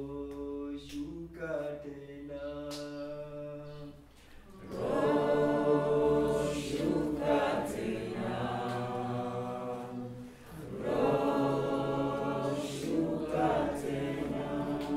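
A choir singing long held notes, growing louder about five seconds in and again around eleven seconds.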